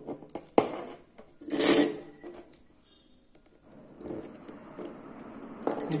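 Handling sounds of steel tweezers and a perfboard on a wooden desk: a few sharp light clicks and brief scraping as a desoldered resistor is gripped and pulled from the board.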